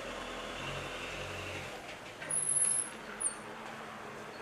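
Road traffic in the background, with a low engine rumble in the first half. A short, very high-pitched squeal comes a little past halfway, with a briefer one soon after.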